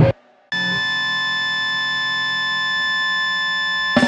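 Fast, distorted band music cuts off abruptly at the start. After half a second of silence a steady, high-pitched electronic-sounding tone with several overtones comes in and holds unchanged, like an alarm beep.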